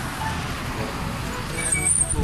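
Roadside traffic noise, a steady low rumble of passing vehicles, with faint voices in the second half.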